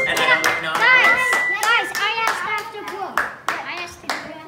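Children clapping and calling out excitedly, with one high steady note from a wooden Orgelkids pipe organ sounding for about a second and a half at the start.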